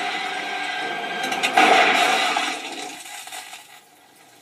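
Film sound effects played through a television: a rushing noise that swells about one and a half seconds in, then dies away near the end.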